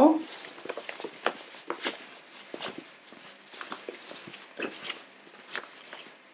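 Irregular quick rustles and light scrapes of a cotton fabric basket, stiffened with interfacing, being handled as its top edge is folded down by hand.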